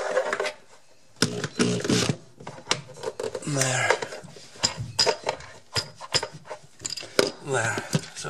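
Indistinct speech in several short stretches, with scattered sharp clicks and light metallic knocks between them.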